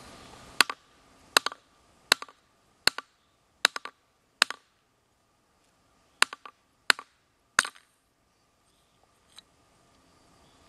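Inertia bullet puller (kinetic hammer) struck repeatedly against a rock to knock the bullet out of a 7.62×54 cartridge. There are nine sharp knocks, about one every 0.75 s, with a pause after the sixth, and some knocks are followed by a short rattle.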